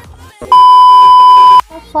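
A censor bleep: one loud, steady electronic beep tone about a second long, starting and stopping abruptly between bits of a woman's speech.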